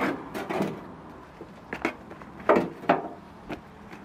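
A metal shovel scooping peat-based compost in a plastic wheelbarrow and tipping it into a plastic pot: a series of scrapes and dull knocks, the loudest pair about two and a half to three seconds in.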